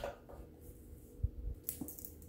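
Faint handling of a purse's long crossbody strap: a couple of soft thuds a little over a second in, then a light click of its metal clip near the end.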